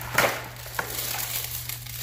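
Plastic toy packaging being opened by hand: the lid of a round plastic capsule comes off with a short, sharp crinkling rustle about a quarter second in, followed by a light click and softer plastic handling.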